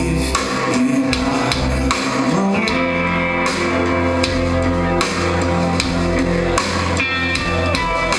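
Live rock band playing an instrumental passage, with electric guitars and a drum kit.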